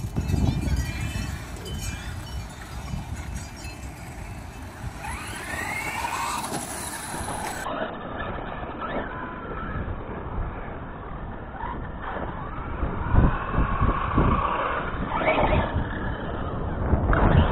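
Brushless electric motor of a Redcat Avalanche XTE radio-controlled monster truck running on a 4S battery, whining with its pitch rising and falling as the throttle is worked, over a low rumble.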